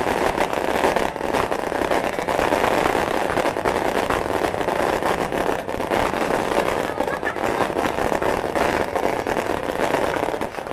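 Fireworks display: a continuous run of pops and crackles from small firework bursts, over the steady chatter of a large crowd of spectators.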